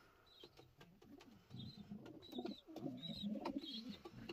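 Racing pigeons cooing: repeated low coos begin about one and a half seconds in, with short faint high chirps and a few light clicks among them.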